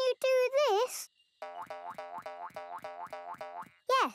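Cartoon sound effects: wavering vocal sounds, then a run of about ten short, evenly spaced pitched notes at roughly four a second, ending in a quick falling boing.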